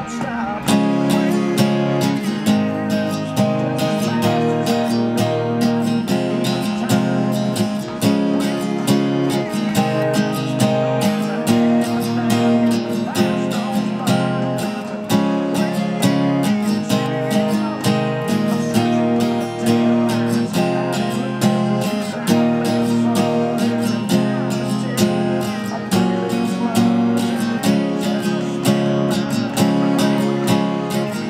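Steel-string acoustic guitar strummed in a steady, fast rhythm, with the chords changing every second or two.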